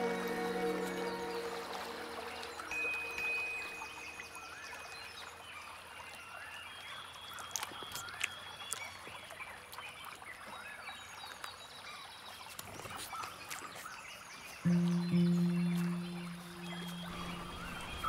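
Soft nature ambience of trickling spring water with short bird chirps, as music tones fade out at the start. A low sustained musical note comes in suddenly about three-quarters of the way through and fades before the end.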